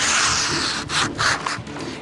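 A large, sharp knife blade slicing through a sheet of paper. There is a long papery rasp at the start, then a few shorter cuts about a second in.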